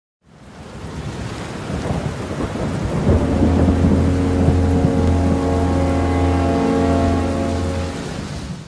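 Intro sound effect of rumbling thunder and rain, fading in. About three seconds in, a steady low droning synth tone is added and holds to the end.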